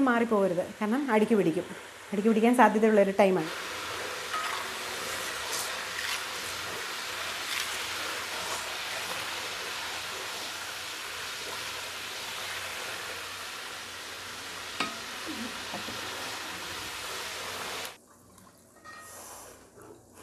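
Herbal hair oil sizzling and bubbling as it cooks in a wide brass pan, stirred with a ladle, with a few light clicks. The sizzling cuts off sharply near the end.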